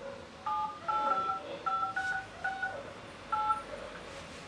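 Smartphone keypad touch-tones (DTMF) as a phone number is dialed: about seven short two-note beeps at uneven intervals, one per key pressed.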